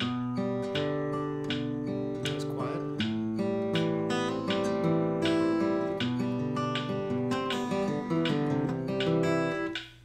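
Acoustic guitar fingerpicked in a steady thumb–index–thumb–middle pattern, single notes plucked evenly and left to ring as the chords change. The playing stops just before the end.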